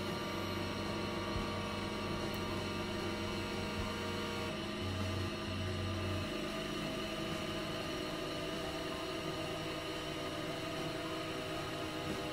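Experimental electronic drone music: many sustained tones layered over a hissing noise bed. A deep low drone breaks up and drops out about halfway through, leaving the higher held tones and the noise.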